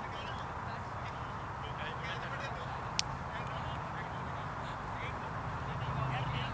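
Outdoor field ambience: a steady haze with faint distant voices and short calls, and one sharp click about halfway through.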